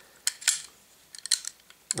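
Ejector rod of a Ruger single-action revolver stroked quickly, giving a few sharp metallic clacks as it hits the front of the cylinder: two about a third and half a second in, more about a second and a half in.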